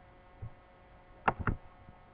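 A small plastic toy pony knocked against a hardcover book: a soft thump about half a second in, then two sharp knocks in quick succession, over a steady low hum.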